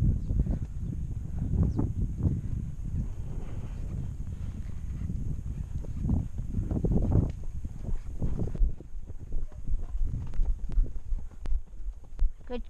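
A horse walking on dirt, its hooves giving irregular low thuds, under a steady low rumble of wind on a GoPro microphone mounted on the rider.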